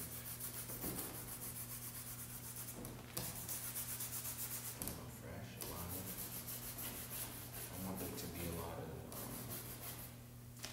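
Paintbrush scrubbing paint onto a stretched canvas in quick back-and-forth strokes, about four a second, pausing briefly a few times.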